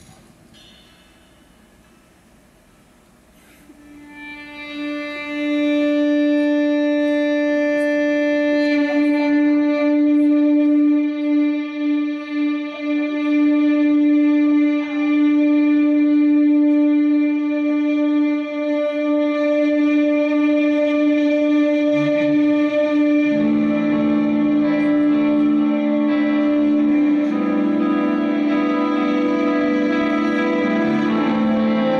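Live band's instrumental opening: after a few seconds of hush, one sustained note swells in about four seconds in and is held steady. More held notes join it around three-quarters of the way through, thickening into a chord.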